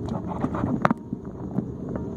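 Steady low rumbling noise on a hand-held phone's microphone as the phone is moved about, with a few short sharp clicks from handling, the loudest a little before the middle.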